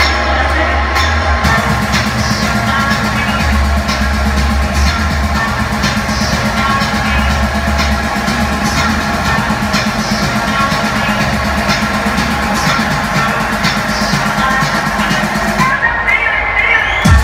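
Techno from a DJ set played loud over a club sound system, with a heavy bass line and a steady beat. A new low part comes in about a second and a half in.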